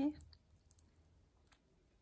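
A spoken syllable ends just at the start, then a few faint, scattered clicks as a glitter-covered stiletto heel is handled and turned over in the hand.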